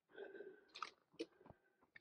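Near silence with a few faint crunches and clicks: footsteps on a dirt forest trail.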